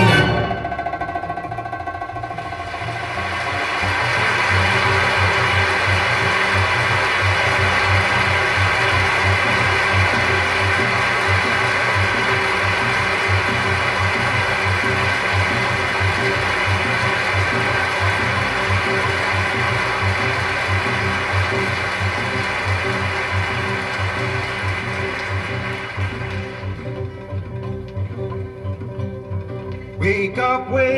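Live-concert audience applause from a vinyl LP played through a Denon DL-102 mono cartridge. The orchestra's last notes die away, the applause swells about three seconds in, holds steady, and thins out near the end.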